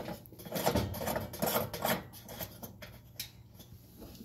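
Oven light fixture being screwed in by hand: irregular short scrapes and clicks of glass turning against the socket's metal threads.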